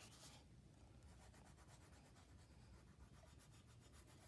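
Faint scratching of a wax crayon stroked back and forth on sketchbook paper, close to silence.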